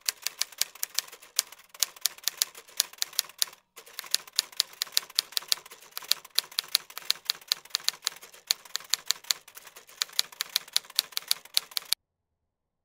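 Typewriter sound effect: a fast, uneven run of key clicks, about six a second, with a short break a few seconds in, keeping pace with on-screen text being typed out letter by letter.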